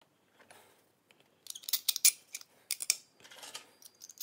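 Light metallic clicks and scrapes from a drilled brass disc and small metal parts being handled by hand, faint at first and then a quick irregular run of sharp clicks from about a second and a half in.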